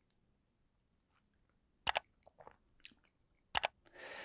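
Mouth sounds of someone tasting beer: sharp lip smacks and tongue clicks, a pair about two seconds in, a few softer clicks, then another pair near the end.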